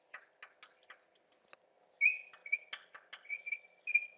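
Chalk writing on a blackboard: a string of light taps and clicks over the first two seconds, then short, high chalk squeaks repeating through the second half.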